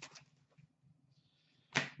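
Trading cards being handled: a few faint clicks and a soft rustle, then a short, sharp swish-snap of cards near the end.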